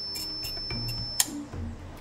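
Multimeter continuity beeper sounding a steady high beep that cuts off with a sharp click about a second in, as the Coel RTM timer switch's contact opens at its programmed off time. Faint ticks of the timer's programming dial being turned run through it.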